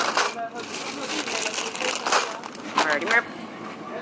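Rustling and crinkling as a cloth bag and plastic-wrapped groceries are handled in a plastic shopping basket, in bursts near the start and again through the middle. A brief voice comes in near the end.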